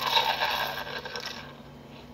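Sound effects from a film trailer played through a portable DVD player's small speaker: a burst of noise, loudest at the start, that fades away over about a second and a half.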